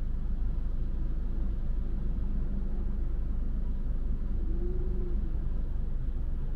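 Road traffic crossing a city junction: cars and trucks passing, heard as a steady low rumble. A faint engine whine rises and falls briefly near the end.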